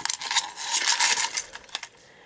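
Glass beads and small metal charms clicking and rattling against each other and the metal muffin tin as fingers rummage through a cup. The clicks come in a quick, dense run that thins out in the second half.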